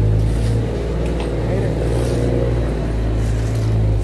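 An engine running steadily at a constant speed, a loud, even low drone.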